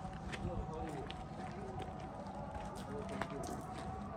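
Faint, indistinct voices and footsteps on a gravel path, over a steady faint hum.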